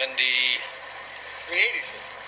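Speech: a man's voice played back from a video through laptop speakers, with a low background hiss in the pause between words.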